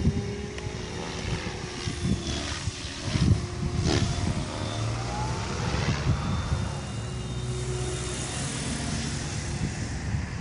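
Electric MSH Protos RC helicopter flying overhead, its 470 mm main rotor held at about 2300 rpm headspeed by a governor. It gives a steady hum with a thin high whine. An uneven low rumble of wind on the microphone runs under it.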